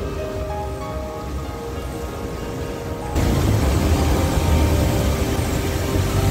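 Background music with long held notes over a low rumble. About three seconds in, a loud, even rushing noise of fast-flowing stream water cuts in under the music.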